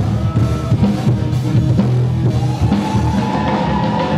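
Rock-style band music with a drum kit, a pulsing bass line and guitar, and a long held note starting about halfway through.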